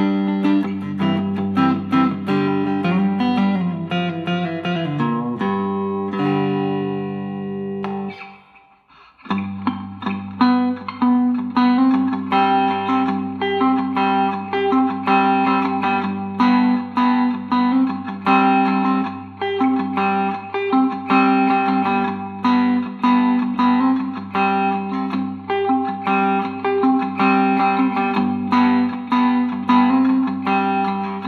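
Three-string cigar box guitar with a dog-bowl resonator, picked in a repeating riff. Near eight seconds in a chord rings out and fades to a brief gap, then the picking starts again.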